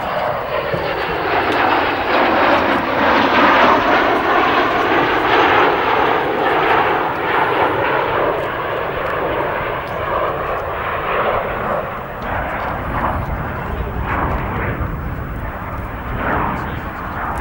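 Jet noise of an English Electric Canberra's twin Rolls-Royce Avon turbojets on a low flypast, swelling over the first few seconds and then slowly fading as it passes. A deep rumble grows in the later seconds.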